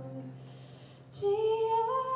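A woman singing with a live band: one sung phrase fades out over a low held accompaniment note, and after a brief dip and a short hissing consonant about a second in, a new note slides up and is held.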